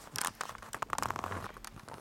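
Handling noise from a video camera being picked up and moved: a dense run of rustles, scrapes and clicks that dies down near the end.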